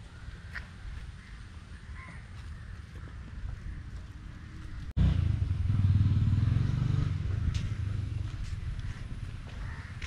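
Open-air ambience with a few scattered crow calls. About halfway through it cuts abruptly to a much louder low rumble that slowly eases off.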